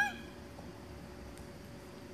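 One brief, high-pitched call that rises in pitch, right at the start, then only faint steady background.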